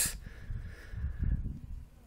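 Wind buffeting the microphone on an exposed tee, an uneven low rumble that rises and falls.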